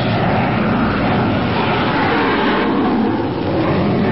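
Radio-drama sound effect of a twin-jet airplane's engines at full power during its takeoff run, a loud steady noise.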